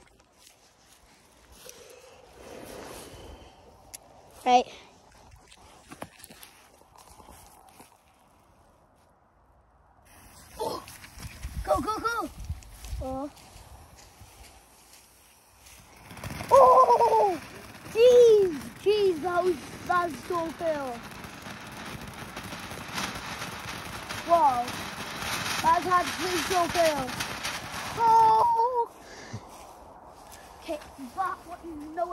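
A ground fountain firework spraying sparks with a steady hiss. The hiss starts about ten seconds in and stops shortly before the end. Excited voices call out over it.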